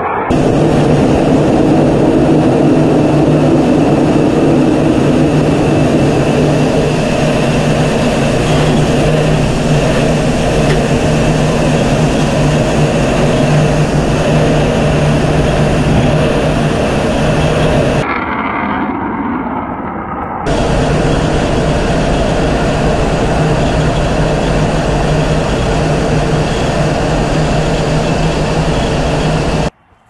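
Su-57 fighter's jet engines running in flight, a loud, steady noise with a low hum beneath it. Partway through it briefly turns duller and quieter, then comes back; it cuts off abruptly just before the end.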